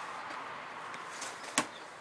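Handling noise: a faint rustle, then a single sharp knock about one and a half seconds in.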